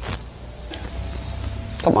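Steady, high-pitched insect chorus from the trees, with a low rumble underneath.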